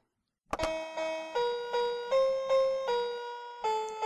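A child's musical toy, a toy cash register, playing a slow chiming melody one note at a time. It starts suddenly with a click about half a second in, after a moment of silence.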